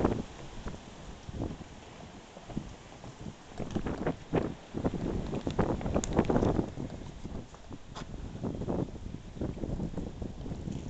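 Footsteps going down wooden porch steps and then along a concrete sidewalk, as irregular knocks and scuffs, with wind rumbling on the microphone.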